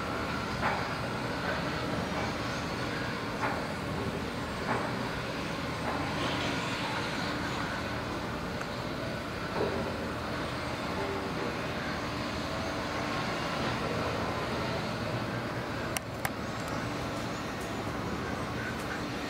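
Steady distant mechanical rumble in the open air, with a faint hum running through it, a few faint clicks, and a sharper pair of knocks near the end.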